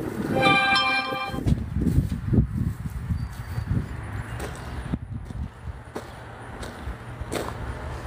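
Footsteps on gravel with low rumble from the handheld phone microphone. About half a second in, a brief steady pitched tone with several overtones sounds for about a second. A faint steady low hum runs through the second half.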